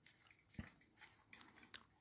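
Near silence, with a few faint clicks and rustles of plastic lamp flex and its crimp connectors being handled and pushed through the lamp base.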